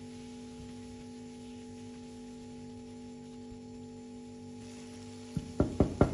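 Background music of soft notes held steadily, over a faint sizzle of vegetables frying in a pan. A few short, louder sounds come near the end.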